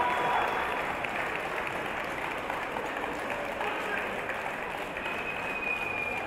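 Spectators in a sports hall applauding steadily after a judo bout decided by ippon.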